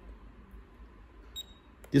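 Quiet room tone, then one very short high electronic beep about one and a half seconds in as the button on a GOOLOO GT150 tire inflator is pressed to switch on its light. A soft click follows just before the end.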